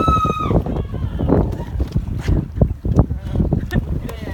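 Wind buffeting the microphone, with irregular low knocks from footsteps and handling as the camera is carried across a catamaran deck. A short, high, steady call sounds right at the start.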